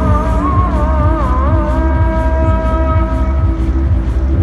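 A muezzin's call to prayer: one voice sings ornamented, wavering phrases, then holds a single long note that fades near the end. Under it runs a steady low rumble.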